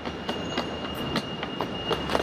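Street traffic outside a railway station: a low, steady rumble of vehicle engines, with a thin steady high-pitched whine and scattered light clicks over it.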